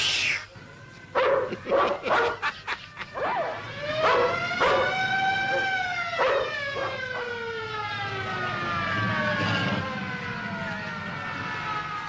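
A dog barks several times, then a siren wails, rising over about two seconds and falling slowly over the next six, with a few more barks over its rise.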